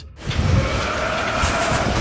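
A long, rough roar of unknown source, noisy with a faint wavering tone running through it, starting just after a brief silence; the explorers take it for a demon or ghost.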